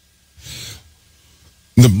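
A man's short audible breath close to the microphone, soft and breathy, lasting about half a second.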